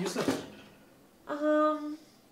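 A person's voice holding one short, steady, level note, like a drawn-out 'uhh' or hum, starting about a second and a half in and stopping abruptly.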